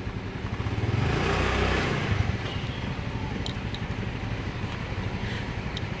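Motor scooter engine running at idle, a steady low hum that swells briefly about a second in.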